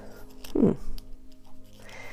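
A woman's short, low "hmm", falling in pitch, with a few faint clicks from a plastic Lamy Safari fountain pen being turned in the hands.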